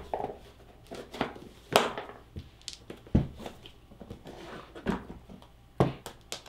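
Trading cards and a lidded deck box being handled: a handful of separate taps and knocks as the cards go in, the lid is shut and the box is set on the table, the loudest knock near the end.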